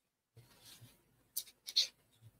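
A few short, faint rustling scrapes, the loudest just before the end, after a moment of near silence.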